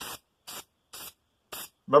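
Aerosol can of deep grey primer spraying in four short bursts about half a second apart, each a brief hiss, laying light coats of primer.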